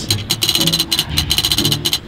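A spinning prize wheel ticking rapidly, about ten ticks a second, as its pointer flicks over the pegs. Background music plays underneath.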